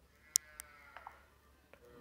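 A faint, drawn-out animal call in the background, with a few light clicks; the loudest is a sharp click about a third of a second in.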